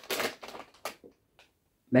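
A plastic lure packet crinkling and rustling as soft plastic worms are pulled out of it, stopping about a second in, followed by a faint tick or two.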